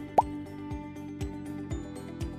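A short plop that rises quickly in pitch, about a fifth of a second in, then background music with a soft low beat about twice a second.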